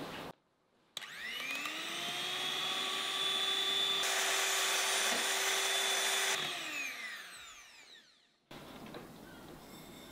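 Electric hand mixer whipping egg whites and sugar into meringue in a glass bowl. The motor spins up with a rising whine about a second in, runs steadily and grows louder in the middle, then winds down with falling pitch and stops about eight seconds in.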